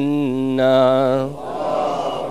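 A man's voice chanting an Arabic invocation in a long, held line on a steady pitch. About 1.3 seconds in it breaks off into a softer, rougher voice sound.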